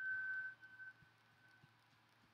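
A single steady high tone, strong for about half a second, then fading out in broken pieces over the next second.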